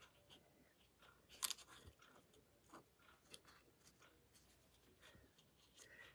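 Near silence with a few faint paper rustles and light taps from card stock and die-cut paper leaves being handled on a craft mat; the loudest is a brief rustle about one and a half seconds in.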